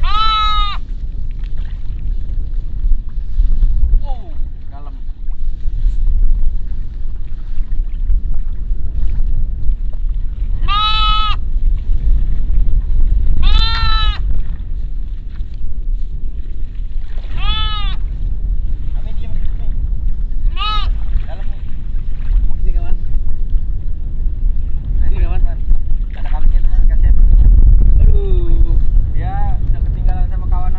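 A goat stranded in floodwater, bleating: about five loud, wavering bleats of a second or so each, spaced several seconds apart, with fainter bleats near the end.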